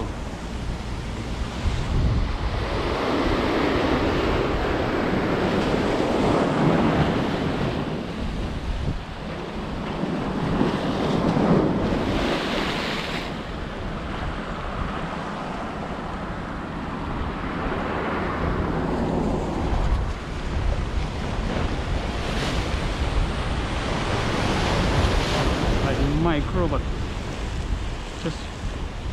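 Ocean surf breaking and washing over rocks at the foot of a seawall, swelling and ebbing every few seconds, with wind buffeting the microphone.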